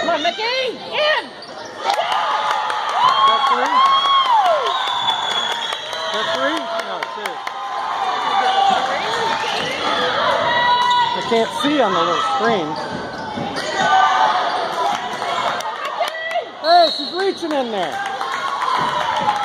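Basketball play on a hardwood gym court: the ball bouncing as it is dribbled, short sharp squeaks from shoes on the floor throughout, and voices calling out.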